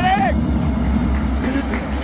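Ice hockey rink ambience during play: a voice shouts a call right at the start, over general arena noise with a low steady rumble and a few faint clicks.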